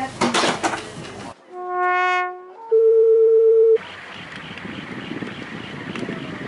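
The tail of busy music cuts to sustained brass-like notes: one note swells up and fades, then a louder steady pure tone holds for about a second. A steady rushing noise follows.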